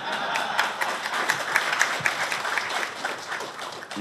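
Audience applauding: a dense patter of many hands clapping that starts abruptly and thins out near the end.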